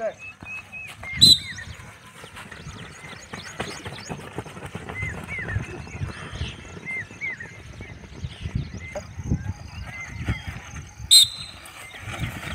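Outdoor ambience with small birds chirping repeatedly, broken by two short, sharp, loud blasts: one about a second in and one near the end.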